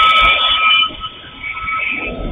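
Level-crossing warning alarm sounding a loud, steady electronic tone that cuts off just under a second in. Underneath it, a passing train's wheels give repeated low knocks.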